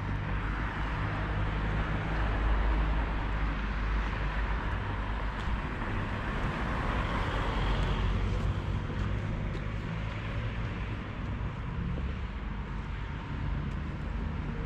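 Street ambience: a steady wash of road traffic noise, swelling briefly about halfway through as a vehicle passes.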